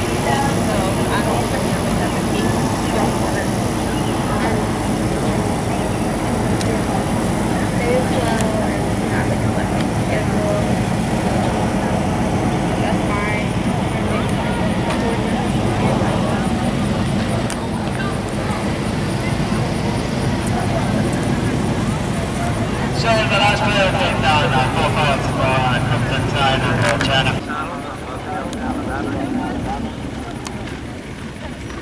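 Indistinct chatter of several people talking over a steady low rumble; the sound drops off abruptly near the end, leaving a quieter outdoor background.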